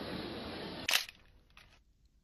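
Steady background noise, then a single sharp click about halfway through, after which the sound drops to near silence.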